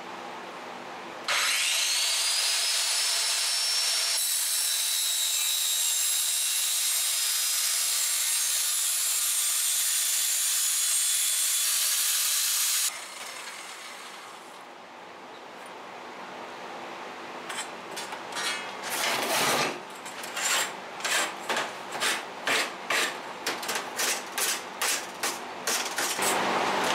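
Angle grinder spinning up with a rising whine and running steadily on a clamped steel strip for about eleven seconds, then switched off and winding down. After that, a hand file scraping along the steel edge in even strokes, a little under two a second.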